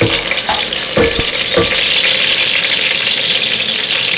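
Sliced onions sizzling steadily in hot oil in an aluminium pot, with a wooden spoon knocking against the pot a few times in the first second and a half as they are stirred.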